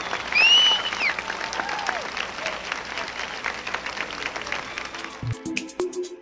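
Audience applauding and cheering, with a few high shouts rising and falling in pitch in the first two seconds. About five seconds in, the applause gives way to electronic music with a steady beat.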